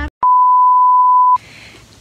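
A single steady electronic beep at about 1 kHz, lasting about a second, edited into the soundtrack like a censor bleep. It starts after a moment of dead silence and cuts off suddenly, leaving a faint hiss.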